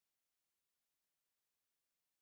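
A steady, very high-pitched tone cuts off suddenly at the very start, leaving dead silence.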